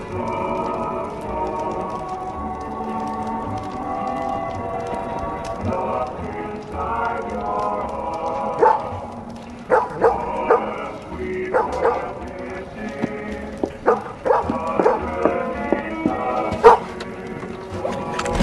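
Background music with long held notes. From about halfway through, a dog barks and whines in about a dozen short, separate yelps over the music.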